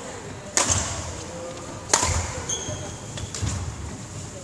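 A badminton racket striking a shuttlecock twice, about a second and a half apart, each a sharp crack with a short ring of echo. Footfalls on the wooden court run between the hits, with a brief shoe squeak after the second.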